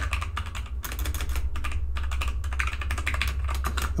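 Typing on a computer keyboard: a quick, uneven run of key clicks, with a steady low hum underneath.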